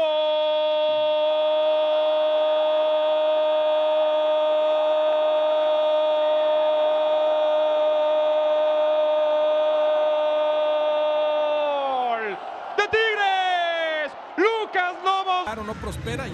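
Football commentator's drawn-out Spanish goal call: a shouted "gol" held on one steady pitch for about twelve seconds, then falling away into a few shorter excited shouts.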